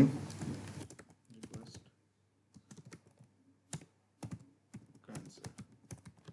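Computer keyboard typing: small clusters of quick keystrokes with short pauses between them, as a short phrase is typed.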